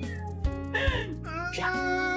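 Background music with held tones, with a short cat meow about a second in.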